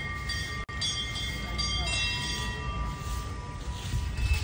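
Temple bells ringing, several struck one after another so that their high tones overlap and hang on, over a low outdoor rumble.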